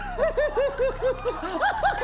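Laughter: a quick run of short, high-pitched 'ha-ha' syllables, about five a second.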